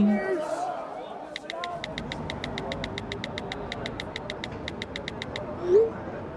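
Bicycle freewheel ratchet ticking as the bike rolls without pedalling: a quick, even run of light clicks, about eight a second, starting a little over a second in and stopping after about four seconds.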